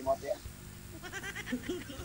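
Faint voices during a lull between louder speech.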